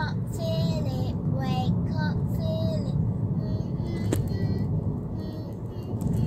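A little girl singing a short song in a high voice inside a moving car, over the steady low rumble of the car and its tyres on the road. The singing thins out in the last couple of seconds, with a single sharp click about four seconds in.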